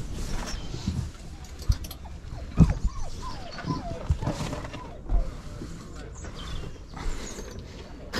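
Hands rummaging through T-shirts packed in a cardboard box: irregular rustling of cotton fabric and scraping of the cardboard, with a couple of dull knocks as the box is bumped.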